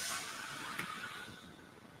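Car engine just after starting, running and gradually quieting as its start-up flare settles toward idle.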